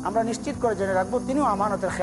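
A man's voice, talking.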